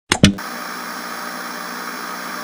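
Analog TV static sound effect: two sharp pops just as it begins, then a steady hiss.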